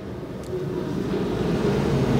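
Steady low background rumble and hum of a large event hall, swelling slightly about half a second in.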